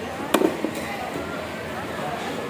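A heavy knife chopping into a fish on a wooden chopping block: one hard chop about a third of a second in, followed quickly by two or three lighter knocks.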